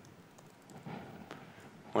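A few faint laptop-keyboard keystrokes as a short command is typed, over low room tone.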